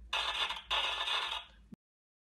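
The needle of an acoustic cabinet gramophone's soundbox scraping on a shellac record as it is set down: two hissy scrapes of about half a second each, then the sound cuts off suddenly.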